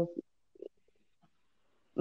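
The trailing end of a woman's drawn-out hesitation 'uh', then a short faint low sound about half a second in, followed by a pause of near silence.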